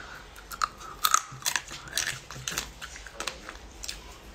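Close-miked chewing of soy-marinated crab meat, with irregular sharp clicks and wet mouth sounds.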